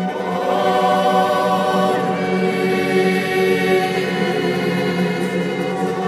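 Choir singing long held chords, a sung acclamation answering the Gospel reading.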